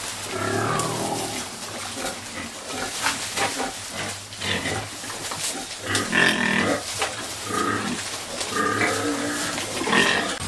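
Pigs eating fresh grass and leafy greens: continual crunching, chewing and rustling of foliage, with a few short pitched pig calls around the middle and near the end.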